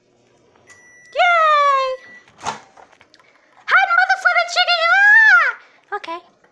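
A microwave oven gives one long electronic beep, the sign that its heating cycle is done. A click follows about halfway through, and a child's high-pitched, wordless voice sounds twice: a short falling cry over the beep, then a longer wavering one near the end.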